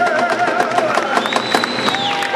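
Audience applauding and cheering at the end of a live song, with a held, wavering final note dying away in the first second and a high whistle from the crowd near the end.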